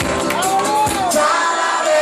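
Live band playing with a lead voice singing over guitar and drums. A sung note rises and falls about halfway through, and the bass drops out for about a second near the end.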